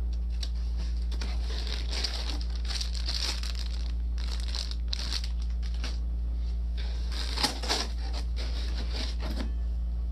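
Clear plastic bag crinkling and rustling in irregular bursts as a bagged spare Bowden tube is handled and pulled out of foam packing, loudest about three quarters of the way through.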